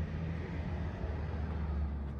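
Steady low rumble of background street traffic.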